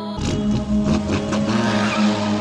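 Car pass-by sound effect, engine and tyre noise rushing in a moment in, laid over the drill beat's sustained synth tones.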